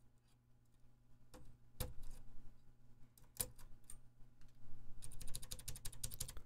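Small plastic clicks of a 3D-printed key stem being fitted into a keyboard slot: a few single clicks, then near the end a quick run of ticks as the stem is pushed down into place.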